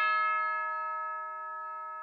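A single bell-like chime note closing a hip-hop track, ringing on alone and fading steadily away.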